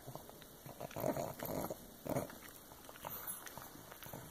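Pug chewing a crunchy treat, in irregular bursts of munching.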